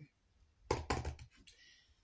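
Cardboard box of organic potato fertiliser being handled on a table: a quick cluster of knocks and thumps about two-thirds of a second in, then a brief scraping rustle.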